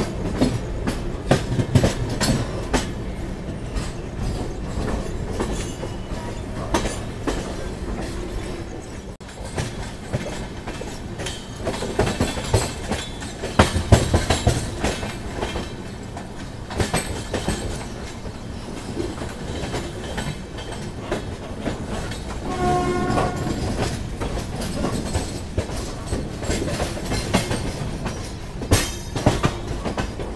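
Wheels of a moving passenger train clattering over rail joints and points, with steady running rumble and wind noise at the open side of the coach. A short horn blast sounds about three-quarters of the way through.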